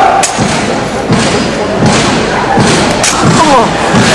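Exhibition drill rifle being spun, tossed and caught, with several sharp slaps and thuds about a second apart as the rifle strikes the performer's hands and body, over a crowd's steady murmur.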